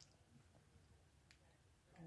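Near silence: room tone, with one faint click a little past halfway.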